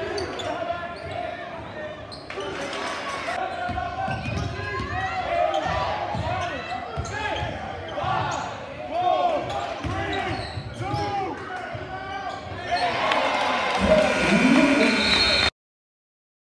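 Basketball game in a gym: a ball dribbling on the hardwood court under the chatter and shouts of the crowd and players. The crowd grows louder near the end, then the sound cuts off suddenly.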